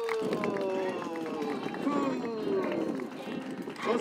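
A crowd of children and adults singing a birthday song together, several voices overlapping in long drawn-out notes that fall slowly in pitch.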